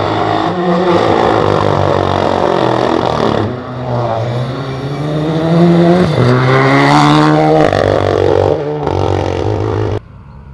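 Renault Clio Rally3 Evo rally car's turbocharged four-cylinder engine at high revs on a gravel stage, accelerating hard with its note rising and falling through gear changes. The sound dips about three and a half seconds in, then climbs again in rising sweeps to its loudest about six to seven seconds in.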